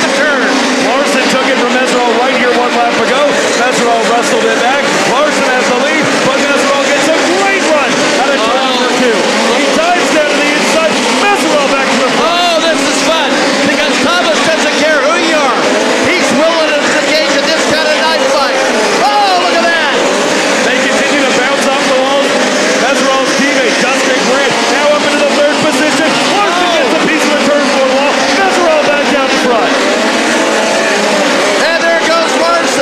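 A pack of four-cylinder midget race cars running hard on a dirt oval. Several engines sound at once, their pitch rising and falling over and over as they lift and get back on the throttle through the turns.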